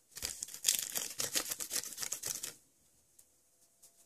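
Dry scratchy rubbing and rustling of brush bristles and paper while colouring a clay miniature, lasting about two and a half seconds, followed by a few faint clicks.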